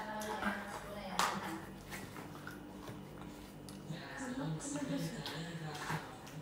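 Low voices talking quietly, with one sharp click a little over a second in.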